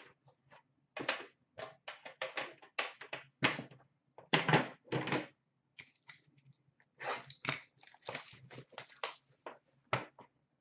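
Metal trading-card tins being handled on a glass counter: an irregular run of quick clicks, taps and knocks as the tins are opened, shifted and set down.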